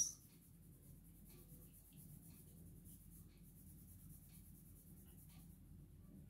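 Very faint, irregular soft scratches and rubs of a hand and pencil working over drawing paper, as graphite shading is blended, heard over near silence.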